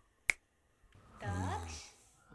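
A single sharp finger snap, over in an instant, followed about a second later by a short call.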